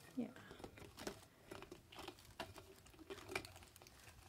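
Faint crinkling with quick, irregular small clicks and taps: a silicone stretch lid being pulled down over the rim of a clear plastic bowl and pressed into place by hand.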